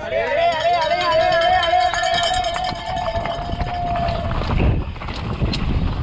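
A long drawn-out shout of about four seconds, wavering at first and then held on one note before it falls away. After it come tyres rolling over a loose, rocky trail and wind on the microphone as the mountain bike sets off down the stage.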